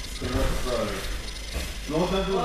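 Indistinct voices in a gym hall, over a faint rapid clicking.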